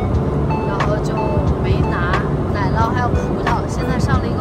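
A voice talking in Mandarin over background music, with the steady low drone of an airliner cabin underneath.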